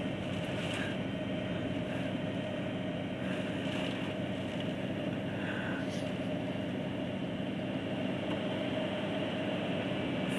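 Steady rushing noise of hurricane wind and rain heard from inside a truck cab, over a steady low hum from the truck's idling engine.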